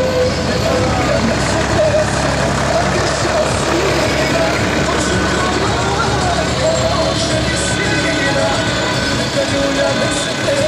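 Road traffic with a steady low engine rumble, mixed with indistinct voices and some music.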